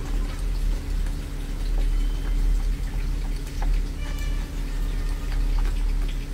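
Soft chewing and small wet mouth clicks of a person eating a cream-filled crepe roll, over a steady low hum.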